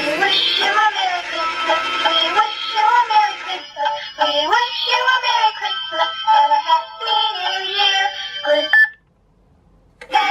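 Electronic Doraemon money-box safe playing a short synthesised sung tune through its small speaker, triggered as a banknote is fed into its slot. The song cuts off suddenly about nine seconds in and starts again at the very end as the next note goes in.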